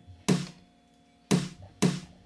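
Count-in clicks just before a song starts: three sharp clicks, the first two a second apart and the third half a second later.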